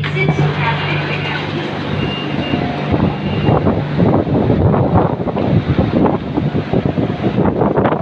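Steady low hum of a stopped Siemens Modular Metro train heard from inside the car, with short electronic tones in the middle. About four seconds in the hum gives way to wind rumbling and crackling on the microphone out on the open elevated platform.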